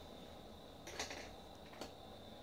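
Two brief scratchy rubs of a hand and drawing tool on drawing paper, the louder about a second in and a shorter, sharper one near the end, over a faint steady hum with a thin high whine.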